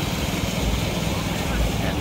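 Steady rush of fast-flowing floodwater, with an uneven low rumble underneath.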